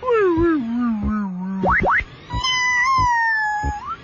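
Retro arcade-style electronic sound effects. A long falling tone is followed by two quick rising sweeps, then a held tone that sags slowly and rises sharply at the end.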